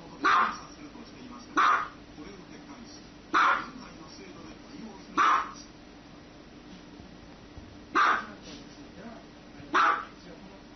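Small white dog barking: six single short barks, spaced about one and a half to two seconds apart, with a longer pause of nearly three seconds before the fifth.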